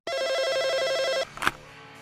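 Telephone ringing once: an electronic trilling ring of two tones lasting about a second. It stops, and a sharp click follows.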